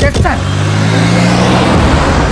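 SUV engine pulling away under throttle, a steady low engine note that rises a little in pitch and dies out near the end.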